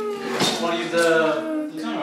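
Background music: a sustained melody of long held notes that glide slowly downward, with a vocal-like quality.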